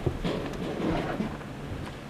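Wind rumbling unevenly on the camera microphone, with a short click right at the start.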